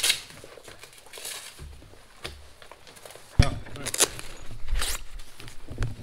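A fabric tool roll being unstrapped and unrolled: a click as it opens, then rustling fabric and a few scrapes. About three and a half seconds in comes a sudden loud thump, followed by low rumbling handling noise.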